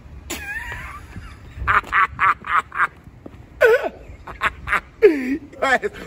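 A man laughing hard, in runs of short, rapid bursts of about four or five a second, with a gliding vocal sound at the start and a low one near the end.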